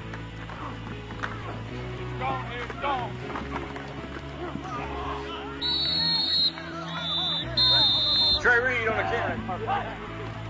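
Music track with a steady bass line and a singing voice. Over it, a referee's whistle blows twice, about six and eight seconds in, each blast just under a second long, as the play is whistled dead.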